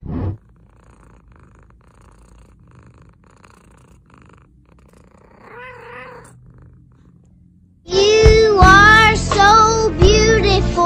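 A domestic cat purring quietly, giving a short rising-and-falling mew with its mouth wide open about six seconds in. A brief whoosh opens the stretch, and loud music with singing cuts in near the end.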